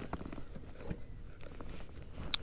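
Hands working in a rubber-mesh fish landing net: faint rustling and a few small clicks and knocks over a low rumble.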